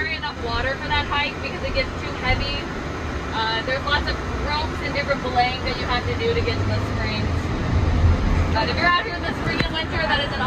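Low, steady rumble of a passenger van's engine and tyres heard from inside the cabin while driving, growing a little louder a few seconds before the end, under a person talking.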